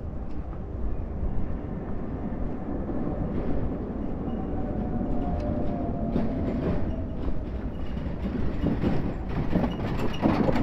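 City tram running past with a steady rumble and a faint whine from about five to eight seconds in.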